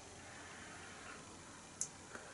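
Quiet room tone with a faint sniff at a glass of beer held to the nose, and one short, sharp click near the end.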